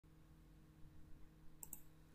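Near silence with a faint steady hum, broken about one and a half seconds in by a couple of soft computer mouse clicks.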